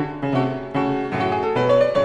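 Classical piano music: a line of struck notes over chords, new notes coming a few times a second and fading as they ring.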